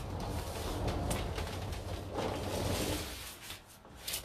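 Sanding block rubbing along the edge of a tabletop covered with decoupage paper, sanding the overhanging paper off flush with the edge. It is a continuous rasping rub that dies away near the end.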